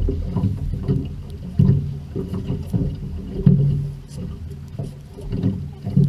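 Water slapping and sloshing against the hull of a small boat at sea, in irregular low surges.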